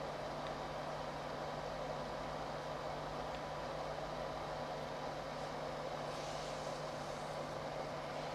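Steady background hiss with a constant low hum: the recording microphone's room tone between narration.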